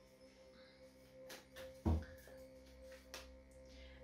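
Faint background music of held, steady tones, with a few soft clicks and one low thump about two seconds in from a tarot deck being shuffled by hand.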